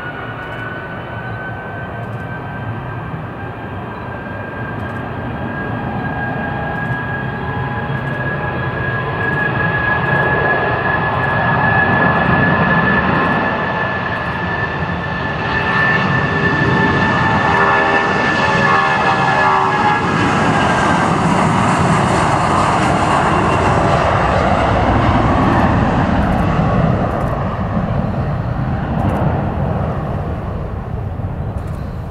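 Boeing 757-200's twin jet engines at takeoff power as the airliner rolls down the runway and lifts off past the camera. A high whine rises at the start and holds steady. The jet noise grows, and the whine fades as the noise peaks after the aircraft passes, in the last third.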